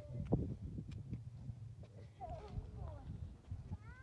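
Wind rumbling on the microphone, with a few handling clicks. Voices of other people talking can be heard in the background from about two seconds in.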